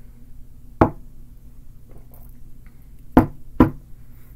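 Three sharp knocks on a tabletop: one about a second in, then two close together near the end.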